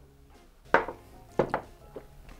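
Two knocks about two-thirds of a second apart from shot glasses set down on a wooden bar top, over quiet background music.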